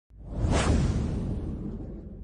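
Logo-reveal whoosh sound effect with a low rumble under it, swelling up to a peak about half a second in and then slowly fading.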